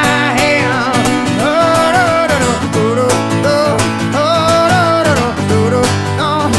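Acoustic guitar strummed in a steady rhythm, with a male voice singing long, wavering notes over it and no clear words.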